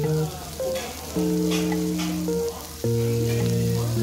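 Strips of pork belly sizzling on a grill plate, under background music of soft, held keyboard notes that are louder than the sizzle.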